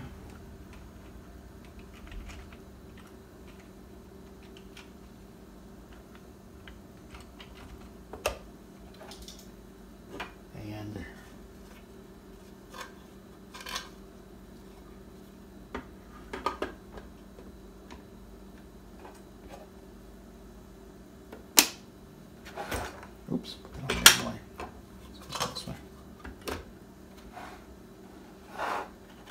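Clicks and knocks of 3D-printed plastic engine-model parts being handled and pressed together as the cylinder head and intake manifold are fitted onto the block. Scattered single clicks, busiest and loudest over the last several seconds, over a faint steady hum.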